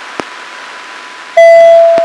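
Radio downlink from the ARISSAT-1 amateur radio satellite: steady receiver hiss with a faint steady whistle and a single click. About a second and a half in, a loud beep starts suddenly and fades away over about a second.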